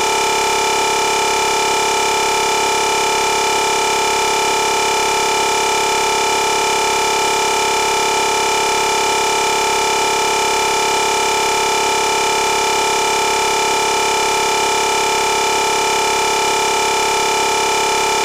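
A steady, unchanging electronic drone of several held tones over a hiss.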